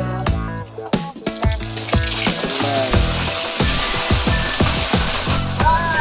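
Background music with a steady beat. From about two seconds in, a rushing hiss joins it: ice water and chunks of ice being poured from a plastic barrel into a boat's fish hold.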